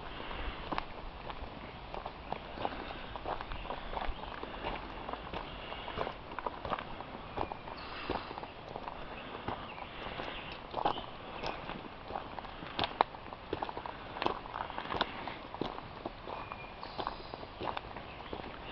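A hiker's footsteps on a dirt and stone forest trail at a walking pace, each step a short crunch.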